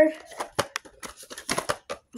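A string of short, sharp clicks and taps from a toy's packaging box being handled, several in quick succession.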